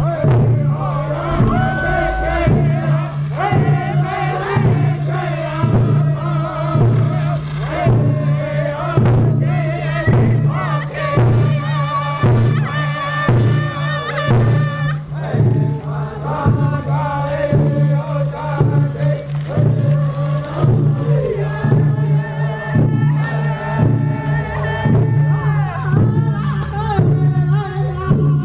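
A chanted song: several voices singing together over a steady, even drumbeat.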